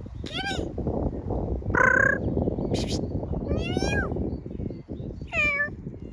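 A domestic cat meowing four times, about every one and a half seconds; each call rises and then falls in pitch.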